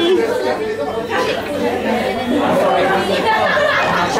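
Busy restaurant chatter: many voices talking over one another at once, steady throughout.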